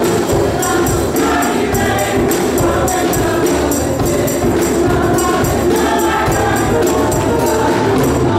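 Gospel choir singing, with a tambourine keeping a steady beat.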